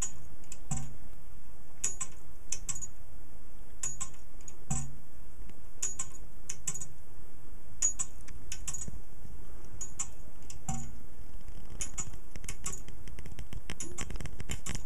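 Homemade Hipps-toggle electric pendulum clock running: the pendulum's contact blades click about once a second, sometimes twice in quick succession, with an occasional duller knock among the clicks.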